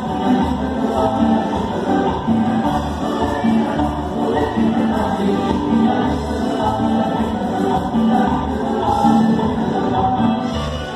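Live tropical dance-band music played loud over a PA system, with group singing over a steady bass beat.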